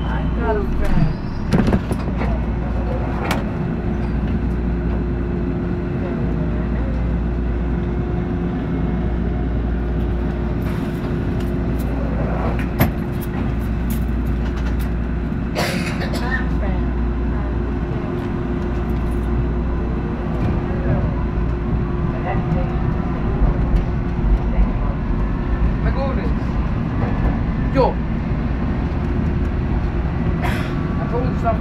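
H6 subway train moving out of a station and into the tunnel: a steady low rumble with a held hum, a few sharp clunks, and a faint rising motor whine in the last third as it gathers speed.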